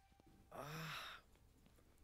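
A person's single short, breathy sigh, lasting under a second about half a second in, amid near silence.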